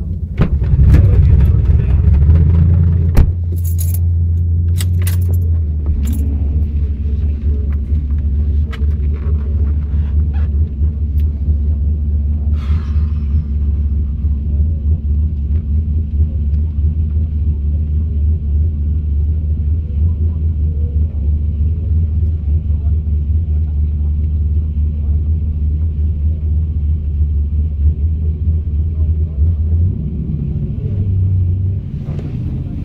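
Holden VZ SS Ute's 5.7 L V8 idling, heard from inside the cabin: louder and unsettled for the first six seconds, then a steady, even idle. A few sharp clicks about three to five seconds in.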